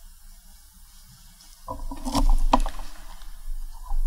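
Handling noise picked up close by the lectern microphone: rustling with two sharp knocks, starting a little under two seconds in after quiet church room tone.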